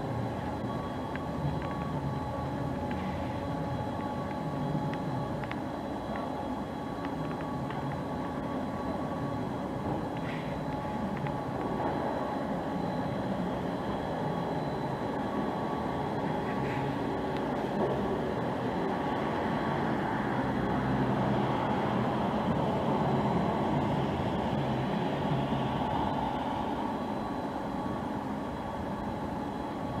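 Fairground observation-tower ride running as its ring-shaped gondola climbs the mast: a steady mechanical hum with a thin whine. It grows a little louder in the second half.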